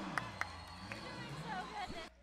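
Gym crowd cheering and shouting after a made three-pointer, many voices at once with a few sharp clicks early on. It cuts off abruptly near the end.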